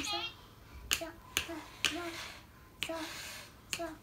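Small xylophone's bars struck one at a time with mallets: about six short wooden notes with a brief ring, slow and unevenly spaced, as a tune is picked out.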